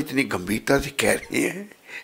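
Speech only: a man talking expressively in Hindi into a microphone, in short broken phrases.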